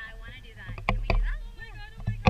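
People's voices calling out and chattering without clear words, over a steady low wind rumble on the microphone. A couple of sharp knocks come about a second in.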